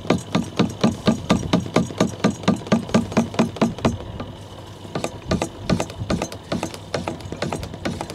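Jiggle siphon being primed: its brass end with a metal ball valve is shaken up and down in a plastic diesel jerry can, clacking about five times a second, then slower and more irregular after about four seconds as the diesel starts to flow up the hose.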